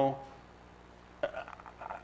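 A man's speech trails off, and after a pause of about a second comes a few short, breathy throat sounds, like a stifled chuckle, picked up by a close microphone.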